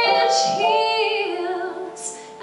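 A woman singing a musical-theatre song live into a microphone, holding a long note that wavers near the middle and breaks off just before the end.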